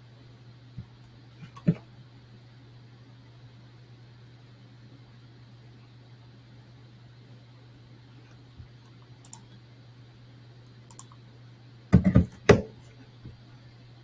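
Computer mouse clicks: a few scattered sharp clicks, then a louder quick cluster of clicks and knocks near the end.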